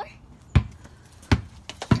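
A basketball bouncing on concrete: three bounces, less than a second apart, as it is dribbled.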